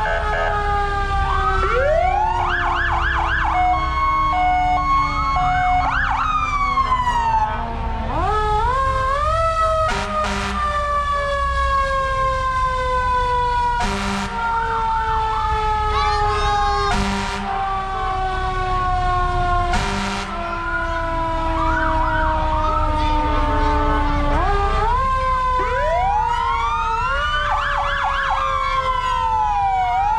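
Several emergency-vehicle sirens sounding at once: slow wails that fall in pitch over several seconds and then sweep back up, overlapped by quicker rising yelps. A few short blasts cut across them in the middle.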